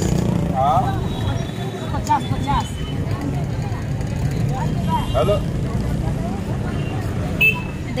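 Open-air street market: scattered voices talking nearby over a steady low rumble of traffic.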